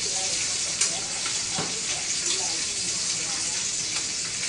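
Food sizzling steadily in a frying pan, with a few short clicks of a utensil against the pan.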